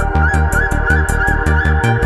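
Electronic psychill track playing: a fast, even hi-hat pattern over pulsing synth bass, with a wavering high melodic line bending up and down above it.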